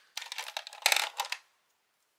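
Plastic Sharpie markers clicking and clattering against each other as one is picked out of the pile, in a quick run of clacks that is loudest about a second in.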